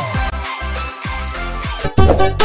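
Electronic dance music with a steady beat of deep bass drum hits that drop in pitch, about two a second, under melodic synth lines.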